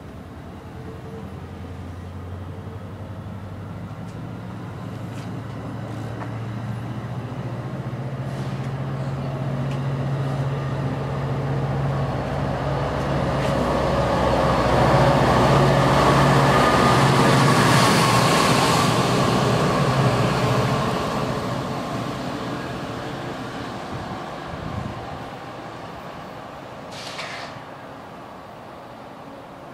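NJ Transit multilevel passenger train rolling past close by, with a low rumble and hum of wheels and running gear. The sound builds steadily as the train gathers speed, is loudest about two-thirds of the way through, then fades as it pulls away.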